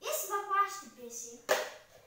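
A boy talking, with one sharp knock about one and a half seconds in.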